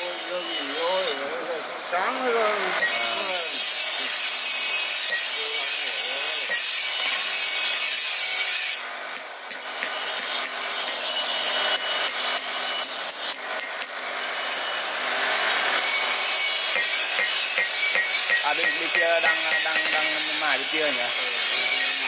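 A blacksmith hammering a small steel knife blank on an anvil by hand, over a steady loud rasping noise of metalworking in the forge. Voices are heard near the start and near the end.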